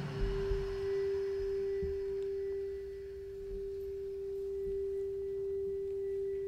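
Quartz crystal singing bowl sung with a wand at its rim, holding one pure, steady tone with a faint higher overtone.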